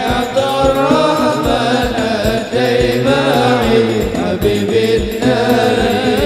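A male voice sings sholawat (Islamic devotional praise of the Prophet) into a microphone, with long ornamented melodic lines. Under the voice is a steady beat of hadroh frame drums.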